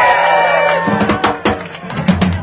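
A long drawn-out shout, then a funk band's drum kit and bass guitar start up again about a second in, with sharp drum hits over a stepping bass line.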